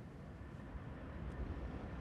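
A low, steady rumble that swells slightly in the middle.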